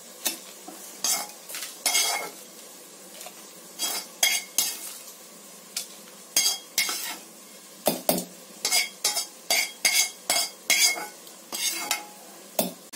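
Perforated metal spatula scraping and tapping against the rim and inside of a stainless steel mixer-grinder jar while fried dried red chillies and spices are scraped into it: a run of short, sharp metallic scrapes and clinks, a few early on and many close together in the second half.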